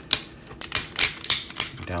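Plastic joints of a TFC Toys Iron Shell transforming robot action figure clicking as its parts are rotated down and around by hand: about six sharp, uneven clicks.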